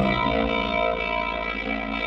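Electric guitar played through effects, holding sustained notes with a distorted edge.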